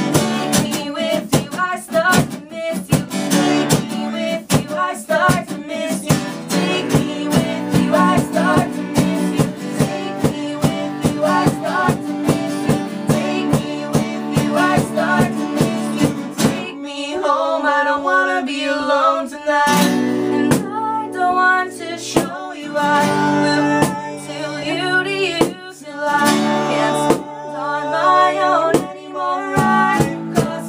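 Live unplugged band: acoustic guitars strummed steadily under a young woman's lead vocal. About two-thirds of the way through, the full strumming drops away, leaving the voice over sparser guitar before the playing builds again near the end.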